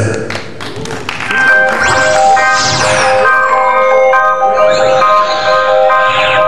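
Live synthesizer intro starting about a second and a half in: held bell-like synth notes with rising sweeps over them.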